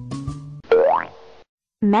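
The last notes of a cartoon jingle, then a short cartoon sound effect sliding quickly upward in pitch, marking a character's sudden transformation.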